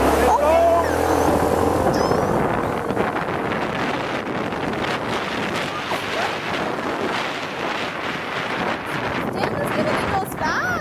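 Wind rushing over the microphone of a moving motorbike, a steady noisy roar. A brief voice and a low hum from the bike come in the first second or two.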